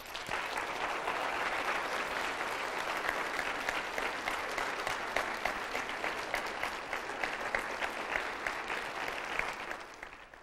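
Audience applauding, many hands clapping at once, dying away at the very end.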